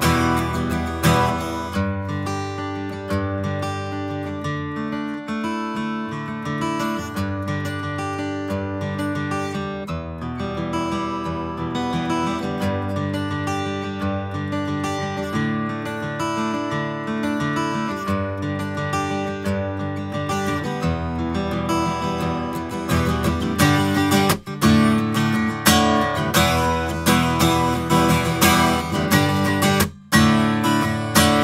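Alhambra Auditorium steel-string acoustic guitar strummed, played close to a condenser microphone. The playing is softer through the middle and grows louder and harder from about three-quarters of the way in.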